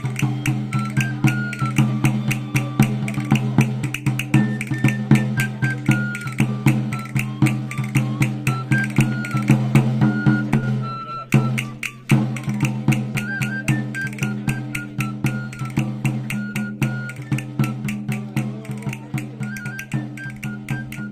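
A three-hole pipe and drum (flauta y tamboril) playing a lively folk dance tune: a high pipe melody over a steady drum beat. The music stops briefly about eleven seconds in, then starts up again.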